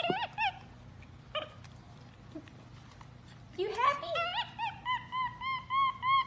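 Capuchin monkey giving high, squeaky chirping calls: a few short chirps at the start, then from about halfway a fast run of calls that rise in pitch and settle into steady repeated squeaks, several a second.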